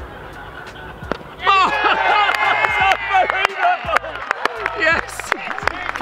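A group of cricket fielders shouting and cheering together, starting about a second and a half in, as the hat-trick wicket falls.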